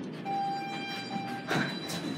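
Dover elevator's electronic signal tone: one steady beep lasting a little over a second, followed by a short rustle near the end.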